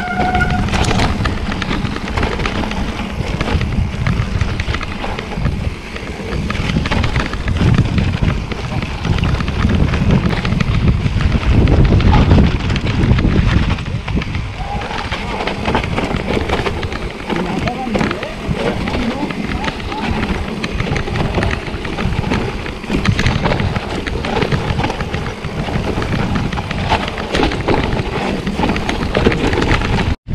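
Mountain bike descending a rough dirt trail: a steady rumble of wind on the microphone and tyres on the ground, with the bike clattering and rattling over bumps and stones.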